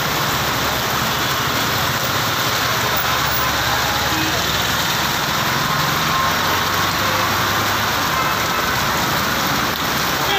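Heavy rain pouring steadily onto a road, with the engines of vehicles in slow traffic running underneath.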